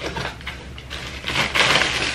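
Crinkling and rustling of plastic packaging, a bag of wrapped sweets being handled, quieter at first and busier from about halfway through.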